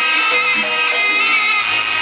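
Live jaranan ensemble music. A nasal, reedy melody, typical of the slompret shawm, moves through held notes over gamelan-style accompaniment.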